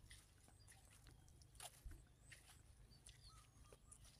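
Near silence: faint open-air countryside ambience with a low rumble, a few soft scattered clicks and brief faint high chirps.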